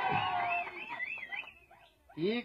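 A faint, high warbling tone that wavers up and down about four times a second, with a lower tone sliding down beneath it; both fade out about a second and a half in, leaving near silence.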